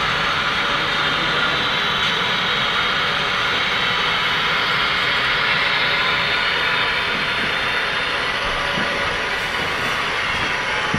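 HO scale model freight cars rolling past close by, with a steady, even rolling noise of small metal wheels on model track that eases slightly near the end as the train slows to a stop.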